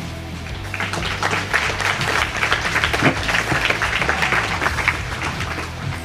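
Audience applauding, building about a second in and dying away near the end, over a steady low music bed.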